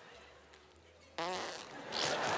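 A woman blows air out through pursed, puffed lips in a short, falling lip-flutter like a raspberry. It starts suddenly about a second in, after near silence.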